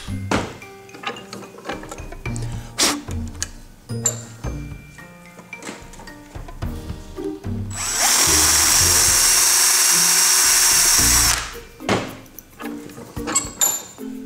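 Power drill with a number 30 bit running for about three seconds, a little past the middle, as it enlarges a mounting hole in a small nut plate clamped in a vise. Background music plays around it.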